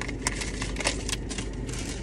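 Light scrapes and small clicks of packages and sticker sheets being handled and set down, over a steady low hum inside a car cabin.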